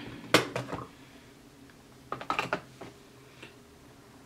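A sharp click, then about two seconds in a quick run of small clicks and knocks as a makeup container and sponge are handled.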